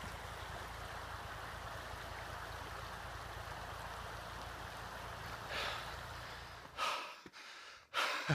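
Steady rush of a shallow mountain stream running over rocks. Near the end this gives way to two heavy breaths from a man out of breath on the climb.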